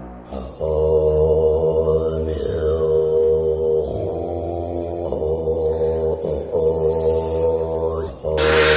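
Music built on a low chanted mantra, a Tibetan-style 'om' held over a deep bass drone. It comes in about half a second in and runs in long sustained phrases with short breaks between them.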